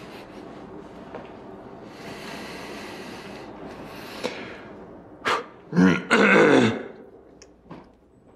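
A man clearing his throat loudly about six seconds in, with a short first catch just before it, after several seconds of faint room hiss.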